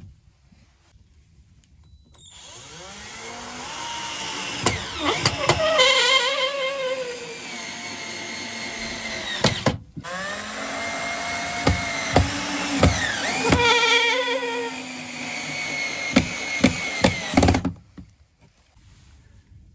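Cordless drill-driver driving screws through a pine shelf board into the OSB wall, in two long runs with a short break between them. The motor whine wavers and sags in pitch as the screws bite, with sharp clicks near the end.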